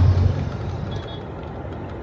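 Low, steady rumble of a car's interior from the engine and road, loudest for the first half second and then settling to a level hum.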